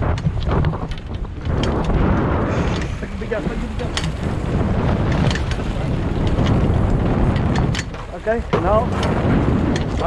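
Wind buffeting the microphone over water splashing at the boat's side as a gaffed yellowfin tuna thrashes alongside the hull. Brief shouts come through around three seconds in and again near the end.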